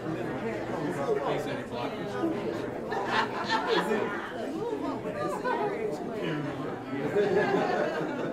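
Indistinct chatter: several people talking at once in low voices, with no single voice standing out.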